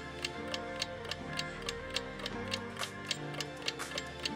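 Ticking countdown-clock sound effect, about three to four ticks a second, over light background music, timing the answer.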